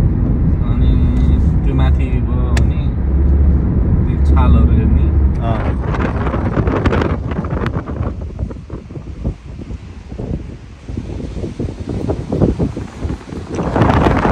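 Road noise inside a car moving at highway speed, a steady low rumble. About halfway through it gives way to quieter, uneven wind buffeting the microphone outdoors.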